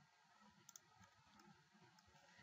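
Near silence with room tone, broken by a couple of faint computer mouse clicks under a second in.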